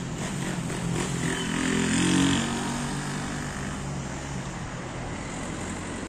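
Street traffic: a motor vehicle drives past, its engine note swelling to a peak about two seconds in and then fading, over steady traffic noise.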